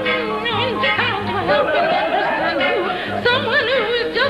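A song with a high, warbling voice that wavers up and down in pitch, over a bass line that pulses at a steady beat.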